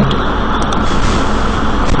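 Loud, steady background noise of the recording: an even hiss with a low rumble beneath it. A few faint clicks come about two-thirds of a second in.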